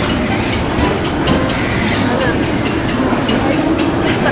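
Steady, fairly loud background noise with a low rumble and faint voices mixed in.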